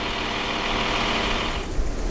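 Diesel engine of an armoured military vehicle (MRAP) idling steadily, ending abruptly about one and a half seconds in.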